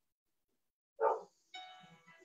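A single short dog bark about a second in. Faint music with held notes starts just after it.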